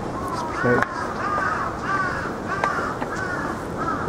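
A crow cawing in a steady run of short calls, about two a second. A short loud knock sounds a little under a second in.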